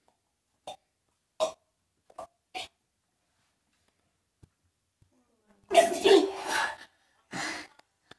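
A girl's throat noises as she tries to swallow raw egg yolk from a mug: a few short gulps or breaths, then a loud, harsh gagging cough lasting about a second, about six seconds in, and a shorter one near the end.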